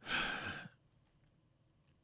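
A man's breathy sigh at the very start, a single exhale lasting about two-thirds of a second.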